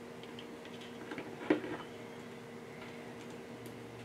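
A few faint clicks of a small porcelain tile piece and metal tile nippers being handled as the piece is set in the jaws, with one sharper click about a second and a half in, over a steady low hum.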